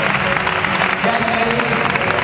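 Audience applauding over music, a dense crackle of clapping with voices in the crowd.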